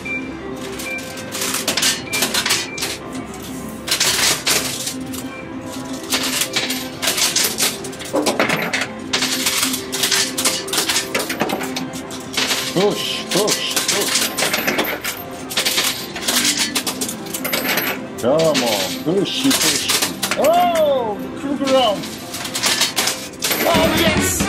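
Euro coins clattering in a coin pusher machine, a long irregular run of sharp metallic clinks as coins are shoved and drop, over steady background music. Near the end, swooping electronic tones come in.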